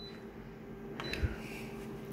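Office copier touchscreen giving two short high confirmation beeps as its keys are pressed, one right at the start and one about a second in, over the machine's steady low hum.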